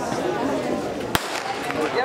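Starter's pistol fired once, a single sharp crack about a second in, giving the start signal for a 400 m race, over people talking.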